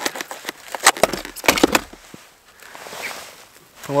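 Handling noise from gloved hands working a snowmobile tool kit and an L-shaped wrench: a run of sharp clicks and crackles in the first two seconds, then a soft hiss around three seconds in.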